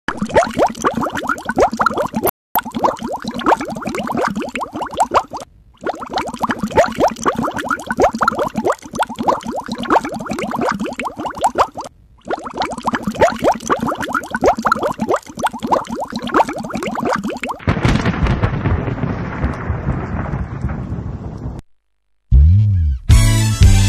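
A dense crackling noise, cut by three brief silences, gives way about three-quarters of the way through to a low rumble that fades out.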